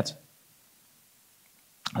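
Near silence in a pause between a man's words, with a short click just before he speaks again near the end.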